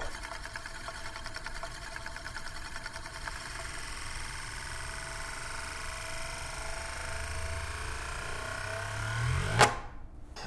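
Euler's disk, a heavy steel disk, spinning and rolling on its concave mirror base: a whirring with a fast flutter that quickens and rises in pitch as the disk settles, then stops suddenly near the end.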